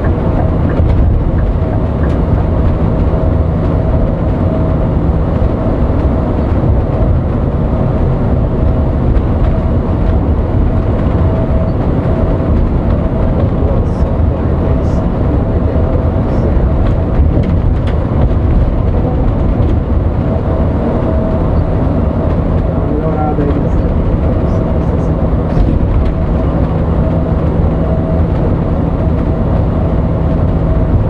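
Cab noise of a coach bus at highway speed: a steady, loud rumble of engine and tyres on the road, with a constant whine running through it.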